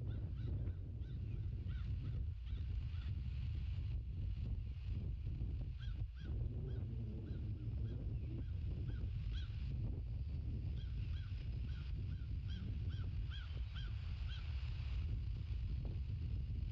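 A bird calling out of sight: runs of short, repeated chirping notes, a few a second, starting and stopping several times, over a steady low rumble of wind on the microphone.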